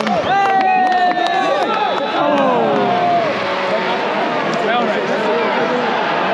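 Football supporters in a stadium crowd shouting and singing over one another, with one voice holding a long, slightly falling note for the first few seconds.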